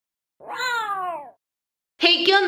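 A cat's meow: a single call of about a second, falling in pitch.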